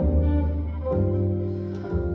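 Gypsy jazz trio of violin, acoustic guitar and upright double bass playing a slow ballad between vocal lines. Two deep double bass notes, one at the start and another about a second in, under sustained violin and strummed guitar chords.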